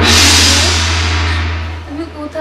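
Dramatic transition sound effect: a sudden loud crash-like hit that fades away over about two seconds, over a steady low drone.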